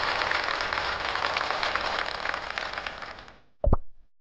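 A dense crackling, clattering noise that fades away about three seconds in, followed by a short pitched blip near the end.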